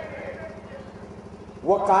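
A pause in a man's speech through a microphone and loudspeakers, with a steady low hum and faint background noise. His voice returns near the end.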